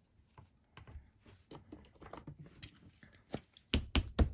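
Faint handling clicks, then near the end a quick run of sharp taps, about five a second: an ink pad being patted onto a clear acrylic stamp to ink it.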